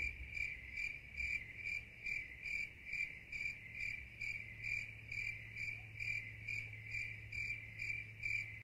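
Cricket chirping in a steady, even rhythm, a little over two chirps a second, with a faint low hum underneath. It cuts in abruptly from silence, like an added sound effect.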